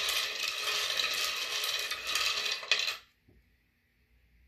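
A set of rune stones clattering as they are stirred and shaken together while the next rune is drawn: a dense rattle of small hard pieces knocking against each other. It stops abruptly about three seconds in.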